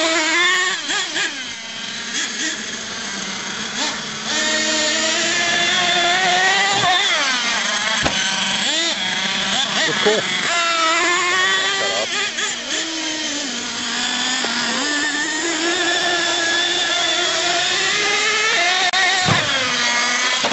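Small nitro engine of a radio-controlled monster truck revving hard and easing off again and again, a high whine rising and falling in pitch as it is driven around and jumped.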